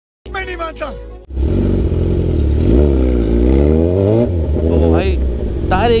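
A short line of film dialogue, then from about a second in the Kawasaki Ninja 1000's inline-four engine with an Austin Racing exhaust, revving, its pitch dipping and climbing again in the middle.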